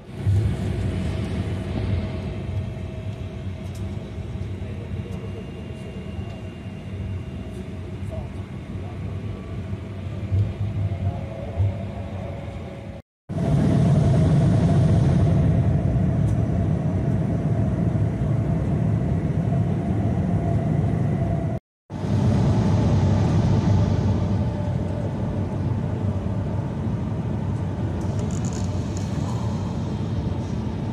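Airliner cabin noise heard from a window seat: a steady low rumble of jet engines and airflow with a faint steady tone. The plane is on the ground at first. After an abrupt cut about 13 seconds in, the plane is in flight and the noise is louder, with another brief silent break near 22 seconds.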